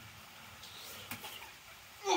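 Faint sounds of a man biting into and chewing a hot slice of pizza, with a couple of soft clicks about a second in.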